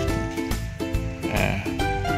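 Background music: a light acoustic track with plucked-string notes.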